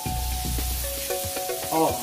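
Shrimp, sausage and peppers sizzling in fat on a hot griddle pan while a spatula stirs them, with small scrapes and clicks of the spatula against the pan.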